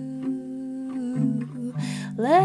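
A soft hummed note held over plucked acoustic guitar, as part of a quiet acoustic song.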